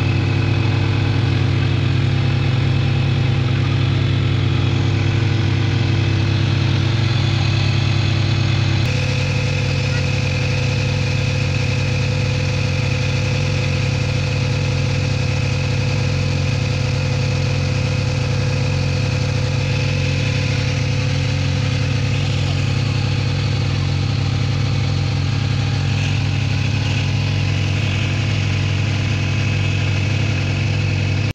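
A motorboat's engine running steadily, heard from on board. Its tone shifts slightly about nine seconds in.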